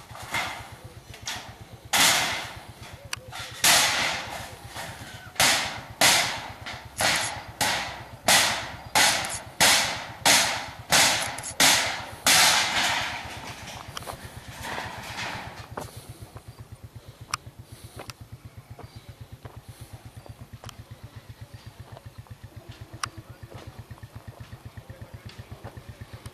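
A rapid series of loud, sharp knocks, about one or two a second and each ringing briefly, lasting roughly the first half, then thinning out to a few fainter knocks. A steady low rapid pulsing runs underneath throughout.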